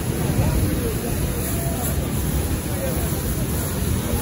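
Water spraying from a hose nozzle onto a car's bodywork: a steady spray under a constant low rumble, with voices murmuring in the background.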